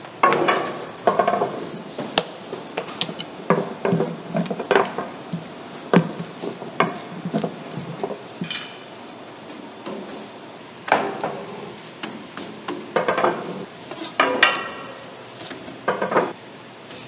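Metal cookware and utensils clattering and knocking irregularly, a few strikes ringing briefly.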